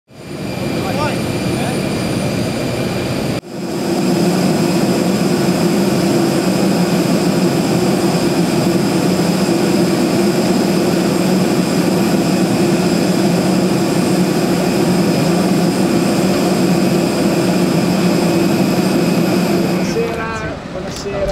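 A parked jet airliner's turbine running on the ground: a loud steady drone with a high whine over it, briefly cut about three seconds in.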